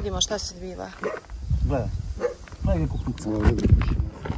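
Indistinct voices talking, over a low rumbling noise.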